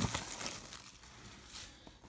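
Plastic shrink wrap on a trading-card box crinkling as it is peeled off, faint and fading out over the first second and a half, with a faint click or two near the end.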